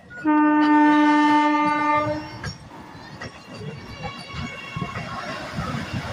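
Vande Bharat Express electric multiple-unit train sounding one steady horn blast of about two seconds as it comes alongside, then its coaches rushing past with the wheels clacking over the track.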